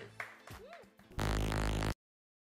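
A faint voice trails off, then about a second in a short, loud, buzzy music sting from a TV show's logo ident plays steadily and cuts off suddenly near the end.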